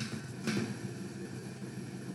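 Quiet room tone with a short, soft noise about half a second in.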